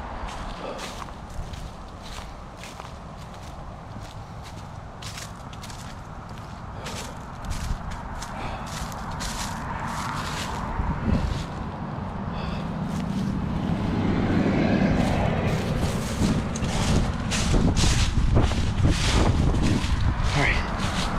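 Footsteps crunching through dry fallen leaves, a steady run of short crisp crackles, over a low rumble that grows louder through the second half.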